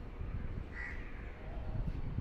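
A crow cawing once, a short call a little under a second in, over a steady low rumble.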